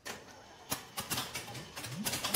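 Starter cranking the supercharged engine of a 1934 Ford coupe with uneven rapid clicks, getting louder near the end as the engine begins to catch.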